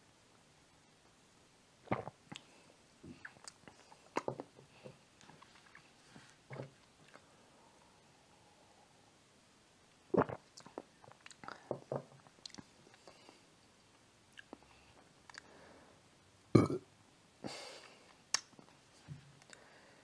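A man sipping and swallowing a fizzy cola drink from a glass: a handful of short mouth and swallowing sounds scattered through long quiet pauses.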